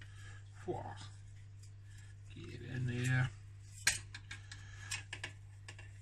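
Plastic frame of a fish net breeder clicking and knocking as its netting is fitted over it: one sharp click about four seconds in, then a few lighter clicks. A steady low hum runs underneath.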